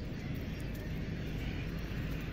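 Steady low rumble of distant engine noise.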